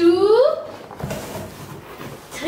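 A young child's high-pitched excited call, rising in pitch, in the first half-second, followed by faint rustling of cardboard as the flaps of a large delivery box are pulled open.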